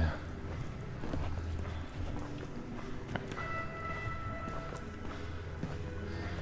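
Footsteps on a polished stone tile floor over a low steady hum, with faint background music whose sustained notes come in about three seconds in.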